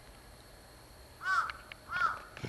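A bird calling twice, two short calls that each rise and fall in pitch, the first a little over a second in and the second near the end.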